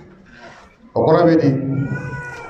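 A man's voice through a microphone, starting about a second in after a brief lull. Near the end a high, drawn-out call with a slight rise and fall begins.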